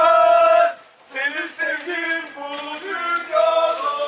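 Group of football fans singing a chant together in long held notes, with a short break about a second in before the next phrase.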